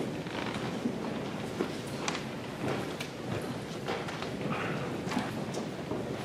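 Footsteps of a uniformed color guard marching across a gymnasium's wooden floor, a string of short knocks over the low hubbub of the room.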